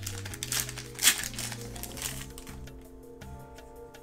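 Foil wrapper of a Yu-Gi-Oh Gladiator's Assault booster pack crinkling as it is torn open by hand, a few sharp rustles in the first two seconds, over steady background music.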